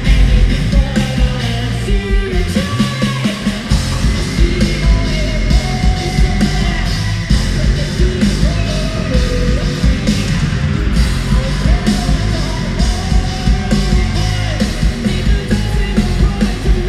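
Live hard rock band playing loud: distorted electric guitar, bass guitar and a drum kit pounding a steady beat, with a held, sung vocal line over it.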